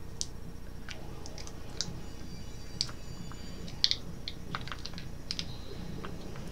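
Food packaging crinkling and snapping in the hands in scattered, irregular sharp clicks as someone struggles to open it.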